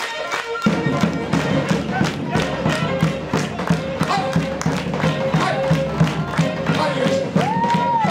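Live Black Sea Turkish folk dance music: a Black Sea kemençe (bowed box-shaped fiddle) plays a fast melody, and a davul (double-headed bass drum beaten with a stick and a thin switch) comes in under a second in with a quick, even beat.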